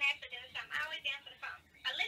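Speech only: a voice talking through a phone's speaker, with the thin, cut-off sound of a phone line.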